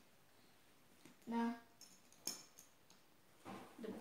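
A few small sharp plastic clicks and clinks as a magnetic pacifier is fitted to a reborn doll's mouth. A short hummed voice sound comes about a second before them.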